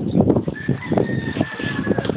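A rooster crowing: one long, drawn-out call that begins about half a second in and falls slightly in pitch. Wind buffets the microphone throughout in uneven gusts.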